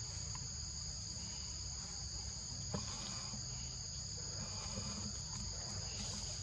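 Forest insects droning steadily in two even high tones over a low rumble, with a single short click a little under three seconds in.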